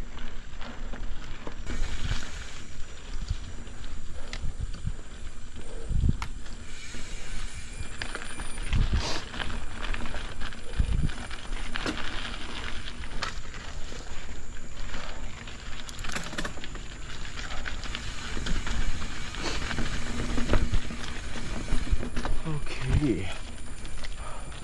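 Mountain bike riding over a dirt trail on knobby Michelin Wild Enduro tyres: a steady rush of tyre and wind noise with scattered low thumps from bumps in the trail.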